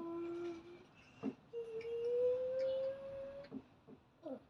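A person humming: a short held note, then a longer note that slowly rises in pitch, with a couple of light taps in between.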